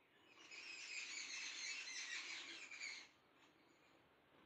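Birds chirping and twittering, high-pitched, for about three seconds before fading out.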